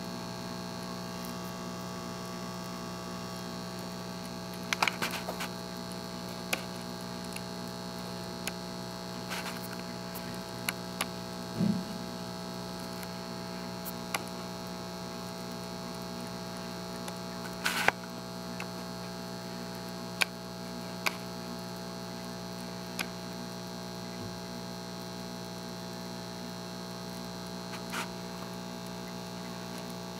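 Steady electrical hum with a few short clicks and taps scattered through it, the sharpest about 18 seconds in.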